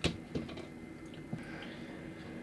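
A small plastic model tank set down on a tabletop: a sharp click right at the start, a softer tap a moment later and a faint one about a second later, then faint room tone.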